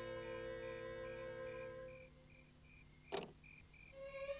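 Cricket chirping as a night-time cartoon sound effect, an even, rhythmic high chirp, over a soft held music chord that fades out about halfway through. A short whoosh sounds near the end.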